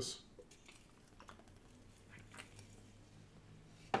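A man taking a swig from a can: faint, scattered swallowing and mouth sounds, with a sharp mouth click near the end.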